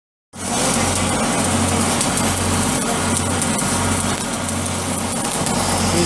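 Stick (shielded metal arc) welding on a steel pipe flange: the arc crackles and sizzles steadily, with a low hum underneath that comes and goes. It cuts in suddenly a moment after a brief silence.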